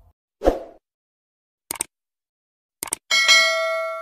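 Subscribe-button animation sound effects: a short burst, two quick double clicks, then a bell ding that rings on and fades.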